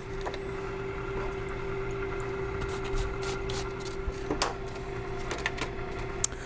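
Overhead laboratory stirrer's motor running at a steady speed with a steady hum, stirring a gum premix into the water phase, with a few light clicks of glassware and handling.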